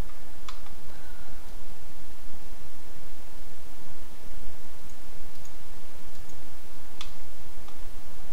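A few sharp computer-mouse clicks, one about half a second in and two near the end, over a steady background hiss.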